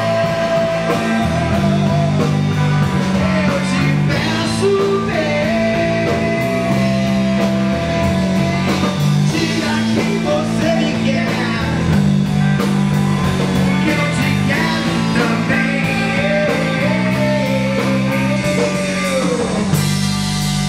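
Rock band playing a passage without lyrics, with guitar, bass and drums. A lead melody holds long notes that waver over chords that change every second or two.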